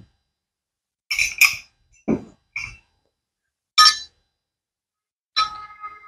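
Glass liquor bottles and a metal jigger being handled and set down on a bar counter: about six short, separate clinks and knocks, the loudest about four seconds in, the last ringing briefly near the end.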